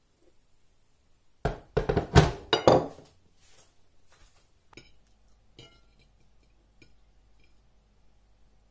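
Ceramic dishes clinking and knocking on a counter: a quick run of several sharp knocks about a second and a half in, then a few lighter clicks.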